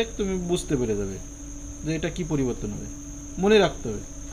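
A man's voice in short, drawn-out sounds with no clear words, one rising and falling near the end, over a steady high-pitched tone in the background.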